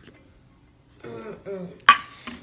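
A voice murmurs briefly, then a single sharp clink of a hard container knocking on a stone counter, with a short ring, just before the end.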